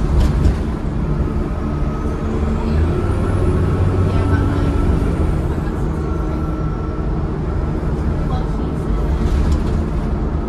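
Cummins ISCe 8.3-litre diesel and ZF Ecomat five-speed automatic gearbox of a Transbus ALX400 Trident bus, heard from inside the passenger saloon while driving, with a steady low rumble and a thin whine that rises in pitch between about two and four seconds in.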